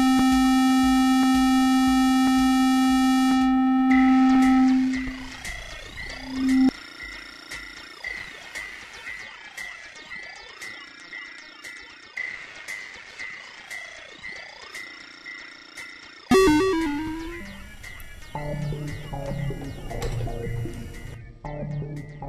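Roland SH-101 monophonic analog synthesizer holding one bright, buzzy note. About four seconds in, its upper harmonics fade out as the filter cutoff is turned down, leaving a more mellow tone. Then come three slow sweeps that rise and fall over a fast ticking, a sudden loud burst, and a run of low notes.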